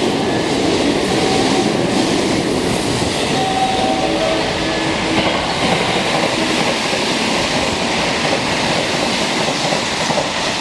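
JR West 223 series electric rapid train passing through a station at speed: a loud, steady rush of wheels on rail and moving air, with faint whining tones about halfway through.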